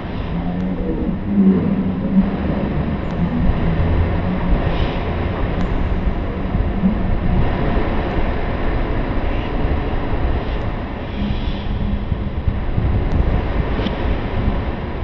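Steady, dense low rumble with faint humming tones and a few faint ticks.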